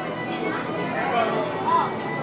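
Indistinct chatter of several people talking, no clear words, at a steady level.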